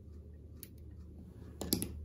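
Small fly-tying scissors snipping the tying thread at a finished nymph: faint clicks, the sharpest near the end.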